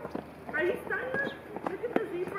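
People's voices chattering, fairly high-pitched, with a few short knocks in between.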